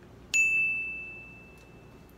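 A single bright bell-like ding, an editing sound effect, struck about a third of a second in and ringing on one steady high pitch as it fades away over about a second and a half.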